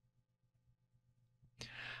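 Near silence, then about one and a half seconds in a short in-breath just before speech resumes.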